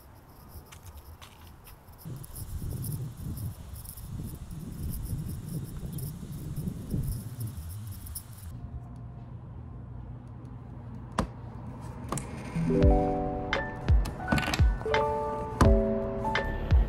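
Background ambience with a faint, steady high-pitched chirring and light clicks and knocks, which drops away after a cut about halfway through. From about three-quarters of the way in, soft background music with clear piano notes and a gentle beat starts.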